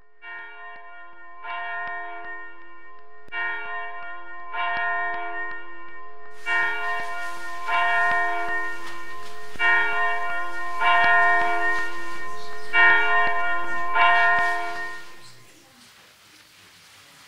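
Church bells ringing, struck in pairs about every two seconds and growing louder, each stroke ringing on with many overtones. A steady hiss joins about halfway, and the ringing fades out near the end.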